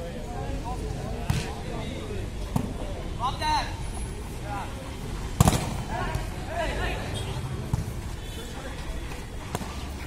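A volleyball being struck several times in a rally: sharp slaps of hands and arms on the ball, the loudest about halfway through. Players and spectators shout and chatter throughout.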